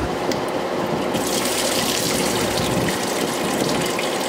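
Engine coolant pouring out of the disconnected lower radiator hose and splashing into a drain pan, the flow getting louder about a second in.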